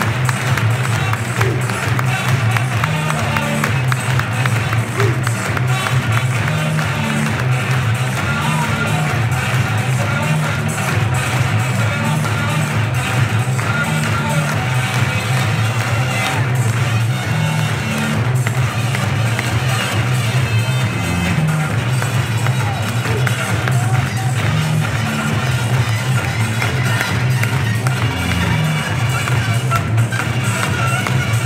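Music played loudly over a football stadium's public address as the teams walk out, with the crowd's noise beneath it.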